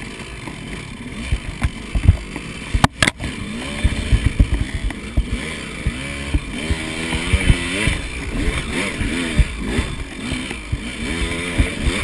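KTM 200 XC two-stroke dirt bike engine revving up and down while climbing a rocky trail, its pitch rising and falling with the throttle, with many short thumps as the bike knocks over rocks. The sound drops out briefly about three seconds in.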